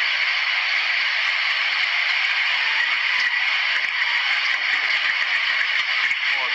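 Steady rushing noise of fast-flowing floodwater, a constant hiss-like roar without separate events.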